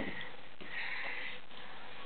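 A single short sniff through the nose about a second in, with a light tap of a cardboard page just before it.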